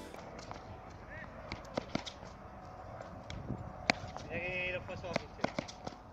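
Quick footsteps and scattered sharp taps on a hard tennis court, the loudest knock about four seconds in, with a short high-pitched sound just after it.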